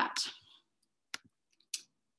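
A woman's word ends at the start, then a single sharp click from a computer mouse or keyboard about a second in, and a short breath near the end.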